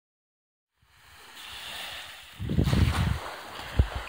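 Gentle surf washing on a sandy beach, fading in from silence. From about halfway in, wind buffets the microphone in low gusts, with a single thump just before the end.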